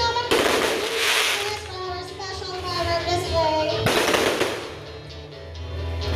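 Music with a sung melody, cut twice by hissing bursts about a second long, one just after the start and one about four seconds in, from a spark fountain shooting sparks.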